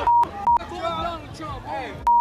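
Two short censor bleeps, a steady 1 kHz tone, blank out shouted profanity in the first half second. Then several protesters' voices shout over one another.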